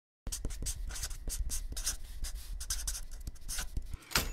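Pen scratching on paper in quick, irregular strokes of handwriting, starting after a moment of silence.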